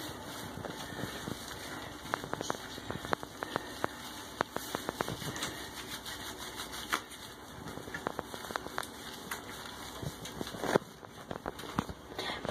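A hand rubbing soap lather into a wet cat's fur in a bathtub: soft, irregular scrubbing with many small clicks and ticks over a steady faint hiss.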